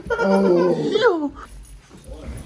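A wild fox whining, a drawn-out call that falls in pitch about a second in.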